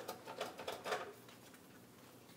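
A quick, uneven run of light clicks and taps, about six of them within the first second.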